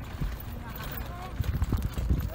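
Hooves of a donkey team clopping on a dirt road as they pull a cart, in an irregular run of knocks that bunches up in the second half.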